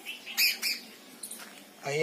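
A bird calling twice in quick succession about half a second in, two short high-pitched calls.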